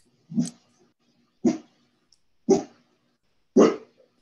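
A dog barking four times, about once a second.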